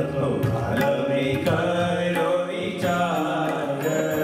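Devotional kirtan: male voices chanting in unison, accompanied by violin, tabla and a two-headed barrel drum, with drum strokes keeping the beat.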